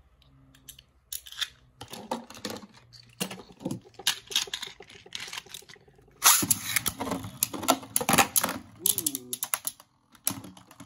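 A Beyblade spinning top turning in a plastic stadium, with faint, scattered clicks. About six seconds in, a second top enters, and there is a dense, loud clatter of plastic-and-metal tops clashing and rattling against each other and the stadium.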